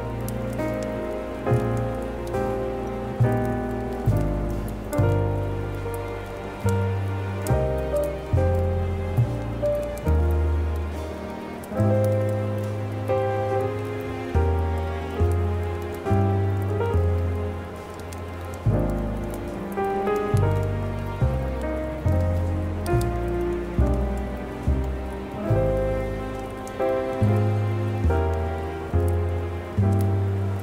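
Slow instrumental Christmas music of struck notes that ring and fade, about one or two a second, over the steady crackle of a wood fire.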